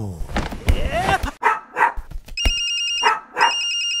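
A mobile phone ringtone sounds as two electronic ringing stretches in the second half. Before it come a few short dog yips.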